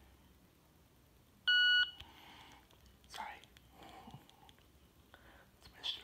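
A Victor Reader Stream gives one short electronic beep about a second and a half in. It is the signal that the power key has been held long enough to release it while holding keys 2, 6 and 8 to enter the diagnostics menu. Faint murmured voice sounds and soft clicks follow.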